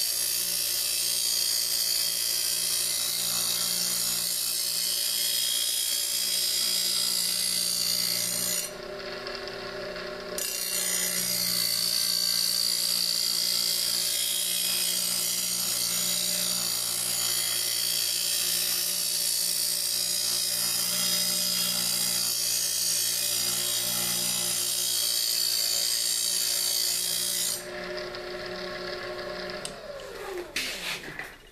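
Diamond wheel of a Harbor Freight circular saw sharpener grinding the edge of a hardened steel 15-inch planer blade as the blade is slid back and forth past it, a high grinding hiss over the motor's steady hum. The grinding breaks off briefly around nine seconds and again near the end, leaving only the motor running. At the very end the motor spins down in falling pitch.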